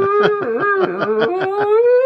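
A woman imitating whale song with her own voice, hands cupped over her mouth: one long wavering moan that slowly rises in pitch.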